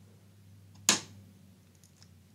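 One sharp click about a second in: the metal toggle control switch on an alternating-relay test box being flipped on, which powers load one.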